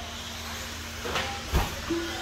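RC off-road buggies racing on an indoor dirt track, heard as a steady hiss under a faint hum. Two short knocks come a little past the middle, about half a second apart.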